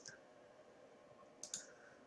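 Near silence: room tone, with a single faint click about one and a half seconds in.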